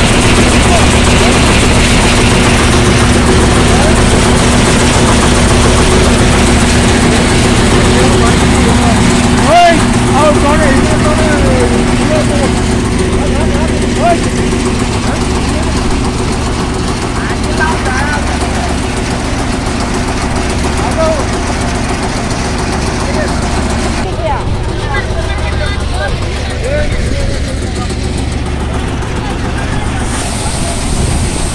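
Tractor-driven sorghum thresher running steadily under load, a loud constant low hum of the engine and threshing drum while grain is delivered. People's voices call out now and then over the machine.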